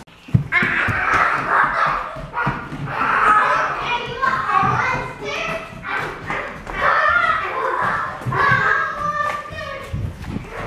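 Young children's voices chattering and calling out in high, unintelligible phrases, with a sharp knock right at the start.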